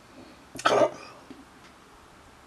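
A person coughing once, a short, sharp cough about half a second in.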